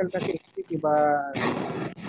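A person's voice through a call microphone: a brief held vowel sound about a second in, followed straight away by a harsh, rough burst of noise, like a breath or throat-clearing into the microphone.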